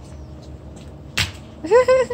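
A short, sharp sound a little over a second in, then a young child's high-pitched voice near the end.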